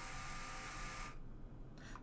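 LEGO SPIKE Prime motor pair running with a faint, steady electric whine for its programmed three-second move. It cuts off suddenly about a second in.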